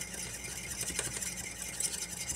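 Orange juice and sugar being stirred briskly in a small metal bowl: a fast, even scraping of the utensil and sugar grains against the metal.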